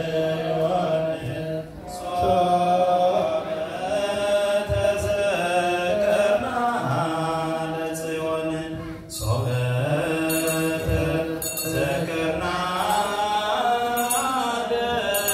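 Ethiopian Orthodox liturgical chant sung by a group of voices together, on long held notes that glide slowly up and down, with short breaks between phrases.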